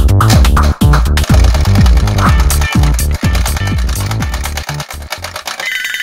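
Electronic dance music with a kick drum about twice a second, fading out near the end.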